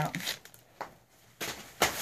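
Packaged items being handled: plastic and cardboard packaging brushes and rustles in a few short scuffs, with a sharper crackle or knock near the end.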